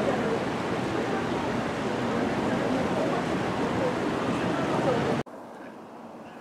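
Steady rush of water running through a shallow, braided creek, with faint distant voices. About five seconds in it cuts off suddenly to much quieter outdoor ambience.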